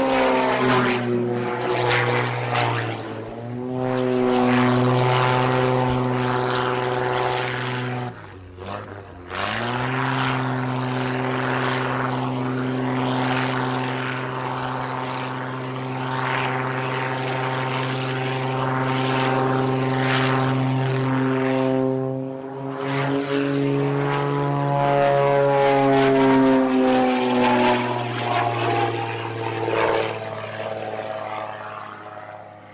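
Extra 330 aerobatic plane's six-cylinder piston engine and propeller running hard through aerobatic manoeuvres: a loud droning note that falls in pitch at first, dips briefly when the power comes off about eight seconds in, returns and holds steady, then rises and falls in pitch again near the end.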